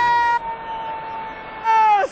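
A man's long, high-pitched celebratory yell held on one note, dropping back a little under half a second in and swelling again near the end before it breaks off with a falling pitch.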